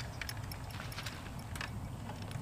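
Faint, scattered light clicks of fishing tackle being handled on rods, over a low steady outdoor rumble.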